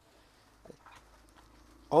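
Near silence: faint room tone with a low hum and one faint, brief sound about two-thirds of a second in, then a man's voice starts right at the end.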